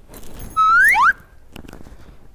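A short rising whistle, about half a second long, starting about half a second in: a held tone that glides upward, with a second, lower tone rising alongside it. A few faint clicks follow near the end.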